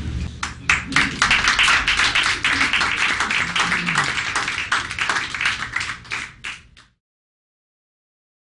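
Applause from a small audience: many hands clapping irregularly, tapering a little and then cutting off abruptly near the end.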